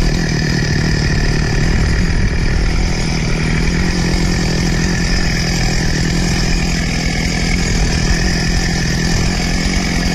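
Stihl two-stroke chainsaw engine running steadily and loudly.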